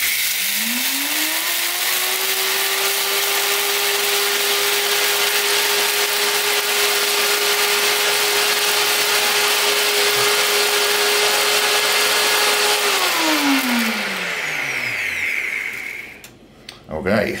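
NutriBullet Rx blender grinding dry jasmine rice into cream of rice. The motor spins up within the first second or so and runs at a steady pitch over the loud noise of the grains being milled. Near the end it is switched off and winds down, falling in pitch over about two seconds.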